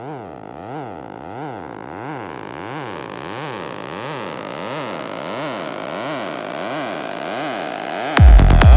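Trance build-up with no beat: a synthesizer tone sweeping up and down in pitch over and over, under a rising noise sweep that grows steadily louder.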